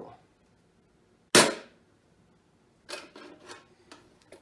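A single sharp knock about a second in, the loudest sound, followed near the end by a short run of light clicks and rattles: a hard socket-set case being picked up and handled.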